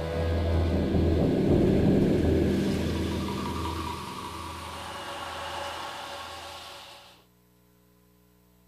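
Soundtrack music with a deep sustained low note, fading steadily and ending about seven seconds in.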